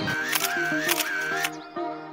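Background music with three sharp camera-shutter clicks about half a second apart, the music dropping out briefly near the end.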